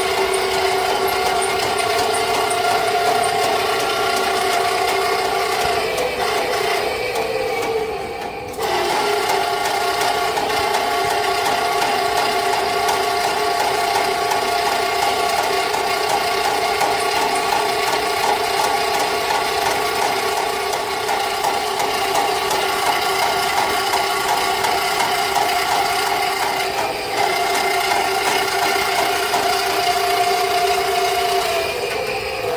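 Electric drum-type sewer snake running, its 18-inch drum spinning the steel cable in the drain line. The motor hum is steady, wavers and dips briefly about eight seconds in, and dips again near the end.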